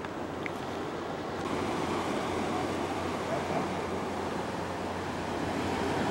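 Ocean surf washing around the pier, a steady rushing noise mixed with wind, growing a little brighter about a second and a half in.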